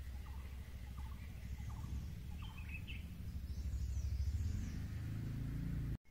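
Outdoor garden ambience: a steady, uneven low rumble with a few faint, short bird chirps in the first few seconds. It cuts off suddenly at the end.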